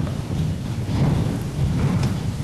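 A roomful of people getting to their feet: a low rumbling shuffle of chairs and feet, a little louder about a second in.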